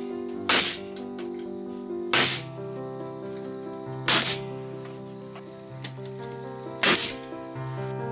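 Brad nailer firing four times at irregular intervals of about two to three seconds, each a short sharp shot with a brief hiss, driving brad nails into a plywood frame. Background music with sustained tones plays underneath.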